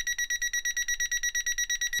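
Toptes PT210 gas leak detector pen sounding its alarm: a fast, even beeping of a high tone, about ten beeps a second. It is picking up unburnt gas escaping from a hob burner that has been blown out.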